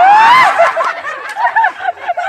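A loud rising shout that breaks into rapid, high-pitched laughter, several short bursts a second.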